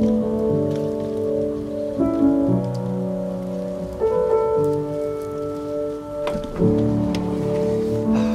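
Background music: sustained chords that change about every two seconds.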